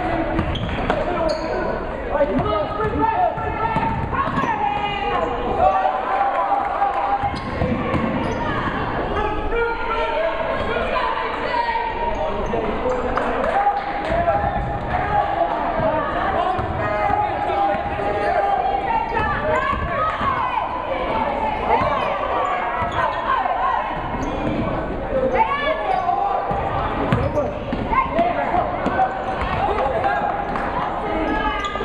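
A basketball dribbled and bouncing on a hardwood gym floor, with indistinct shouts and chatter from players and spectators echoing in the gym throughout.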